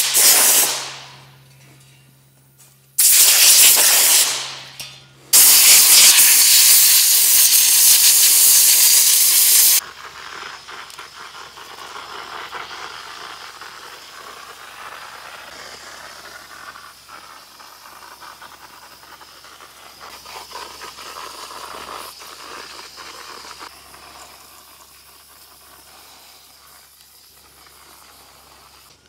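Compressed-air blowgun blasting the parts in three loud blasts over the first ten seconds, the last about four seconds long and cutting off sharply. After it comes the much softer, steady air hiss of an electrostatic powder-coating gun spraying.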